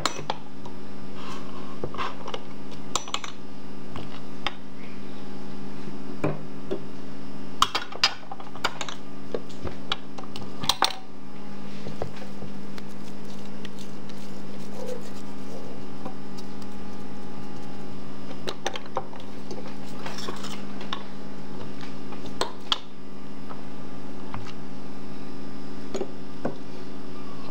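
Metal skewers and the kebab-forming machine clicking and clinking now and then as minced-fish lula kebab is loaded onto the skewers, over a steady low hum.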